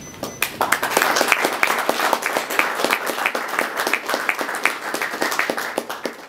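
Audience applauding. The clapping starts about half a second in as dense, irregular claps.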